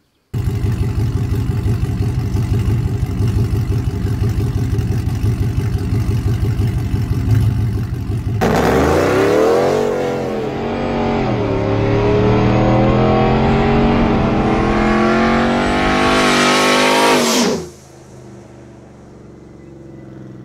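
Pickup truck's 5.7 L Hemi V8 running at a steady, heavy rumble for the first eight seconds or so. It then accelerates hard: the revs climb, drop once as at a gear change, and climb steadily again until the sound cuts off abruptly near the end.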